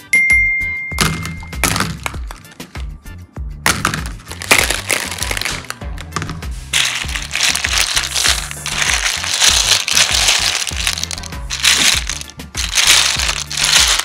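Background music, and from about four seconds in, a pile of small hard plastic building blocks clattering as a hand stirs through them. A short steady tone sounds at the very start.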